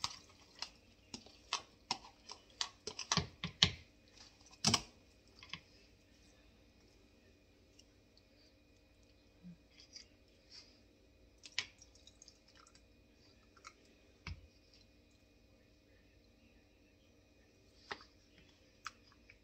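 Metal spoon clicking and tapping against plastic containers while canned vegetables are spooned from one container into another. A quick run of clicks comes in the first five seconds, then occasional single taps.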